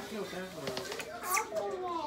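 A woman's muffled, wordless vocal sounds as she works at a drink can's tab with her teeth, with one brief sharp sound about a second and a half in.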